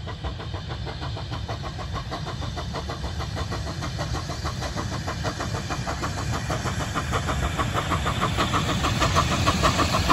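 Saddle-tank steam locomotive working a goods train: fast, regular exhaust chuffs that grow steadily louder as it approaches.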